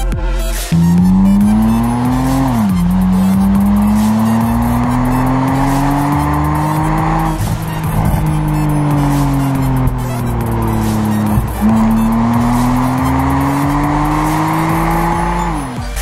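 BMW Z4 engine and exhaust under hard acceleration. The pitch climbs, drops sharply at an upshift about two and a half seconds in, and climbs through a long pull. It then falls away steadily for a few seconds before a second climb with another drop near the end.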